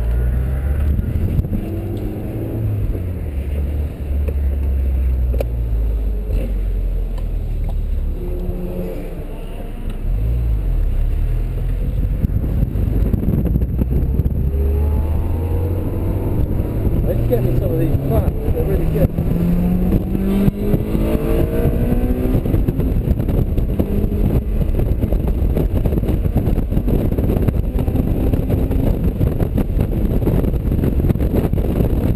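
Honda S2000's four-cylinder engine heard from inside the cabin, first running at low revs while the car rolls along, then accelerating hard about halfway in, its pitch climbing again and again as it pulls through the gears.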